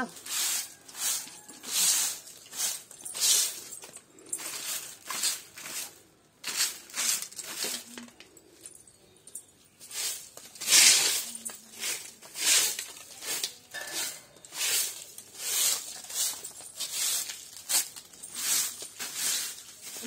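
Short-handled bundle broom sweeping dry leaves across paving stones: a steady run of brushing swishes, a little faster than one stroke a second, with one stronger stroke about eleven seconds in.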